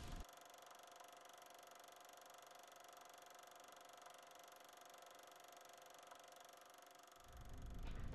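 Near silence with a faint steady hum and hiss. About seven seconds in, a louder low rumble rises.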